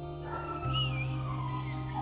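Background music with steady low notes, over which a dog whines in high, drawn-out tones that slide slowly in pitch, starting about a third of a second in.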